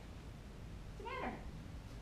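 A cat meowing once, about a second in: a short call that rises and then falls in pitch.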